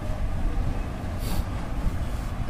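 A steady low rumble of background noise, with a short hiss a little over a second in.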